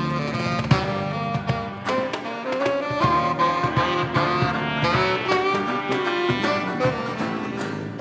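Instrumental break by a street band: a saxophone plays a melody over strummed acoustic and electric guitars.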